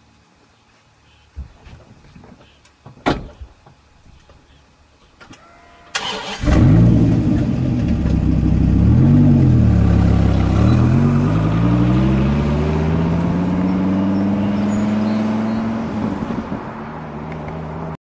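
A few light clicks, then a Dodge Viper's V10 engine starts abruptly about six seconds in. It revs up and back down once, then climbs steadily in pitch as the car accelerates away, fading near the end.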